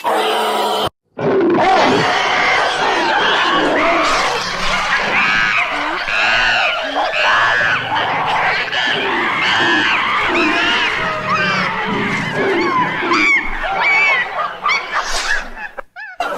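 Sound-designed monkey-men troop calls: many layered ape voices screaming, hooting and grunting at once, built from chimpanzee and baboon recordings. The chorus cuts out briefly about a second in, then carries on.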